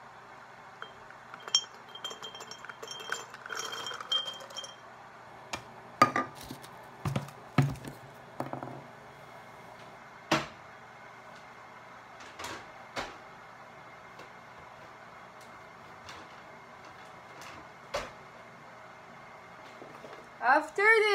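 Raw cashews tipped from a measuring cup into a glass mason jar, a run of small clinks against the glass in the first few seconds. Scattered single knocks and clinks of kitchen things follow.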